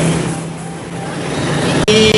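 Road traffic noise: a steady wash of passing vehicles with a low hum, slowly growing louder, ending with a sharp click just before the end.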